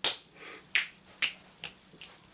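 Four sharp finger snaps, coming a little quicker each time, the first loudest and the last faint.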